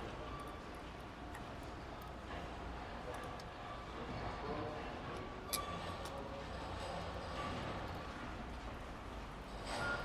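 Faint handling of engine parts: small metal clicks and taps as a water pipe with new gaskets is worked into place by hand on a V8 engine, with one sharper click about five and a half seconds in, over a low steady hum.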